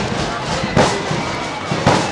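Marching flute band's bass drum and cymbals striking together twice, about a second apart, over a faint held flute note.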